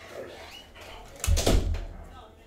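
Handling noise from a rigid plastic card holder being turned over in gloved hands: a dull knock with a short clatter about a second and a quarter in, lasting about half a second.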